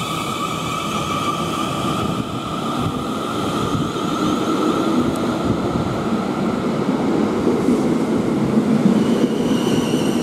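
Class 450 Desiro electric multiple unit pulling away from the platform and passing close by. A steady high whine runs over a rumble of wheels and carriages that grows louder as the train gathers speed.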